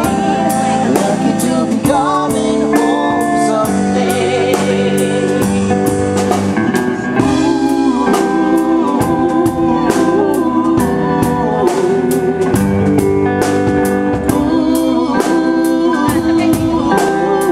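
Live band music: electric guitar, bass and drum kit playing a pop song with a steady beat, drum hits about twice a second.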